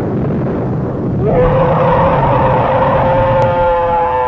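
Intro sound effect over the logo: a low rumbling noise, then about a second in a tone glides up and holds steady to the end.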